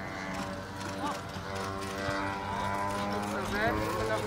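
A pony team and marathon carriage going through a driving obstacle: faint hoofbeats, with short shouted calls about a second in and again near the end, over a steady hum.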